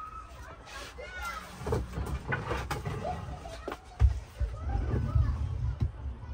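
Thin polyester bathroom wall panel being handled and pressed into place, with irregular knocks and bumps against the wooden framing, and a rumble of handling in the last couple of seconds. Low indistinct voices are heard under it.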